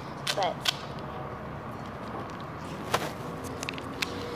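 Handling noise from a roll of tape being worked around a tool: a few sharp clicks and brief rasps, the loudest about three seconds in.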